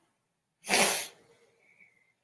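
A short, forceful burst of breath close to the microphone, about half a second long, starting about half a second in.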